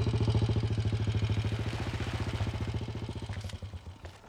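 Motorcycle engine running with a low, rapid putter of even firing pulses, easing off and cutting off just before the end.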